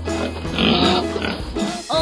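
A pig oinking, a rough, unpitched sound that is loudest about half a second to a second in. It plays over a children's song's backing music, which keeps a steady bass line.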